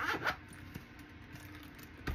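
Zip on a small black zippered case being pulled in a quick stroke near the start.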